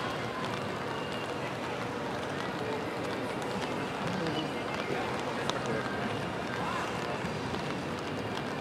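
Outdoor city street ambience: indistinct voices of passers-by and faint footsteps over a steady hiss.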